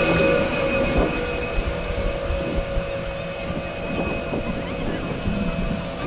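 Wind and movement rumbling on a helmet camera's microphone while skiing slowly, with small knocks, over a steady machine hum of a few pitches.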